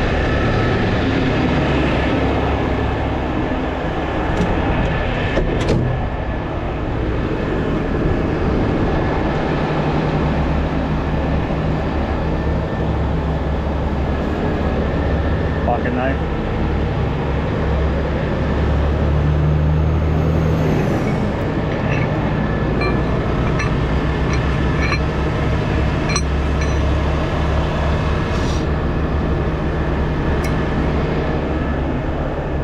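Heavy diesel tow truck's engine running steadily close by, with highway traffic passing. Scattered sharp metal clinks, most of them in the last third, from shackles and rigging being handled.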